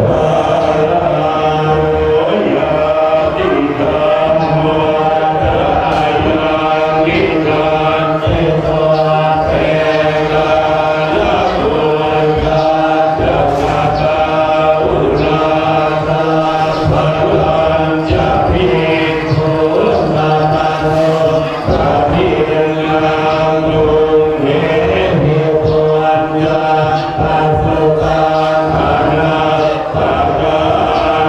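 Theravada Buddhist monks chanting Pali in unison, a continuous group chant of several voices held on a few steady pitches.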